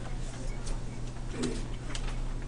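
A few faint computer-keyboard keystrokes, scattered single clicks, over a steady low hum.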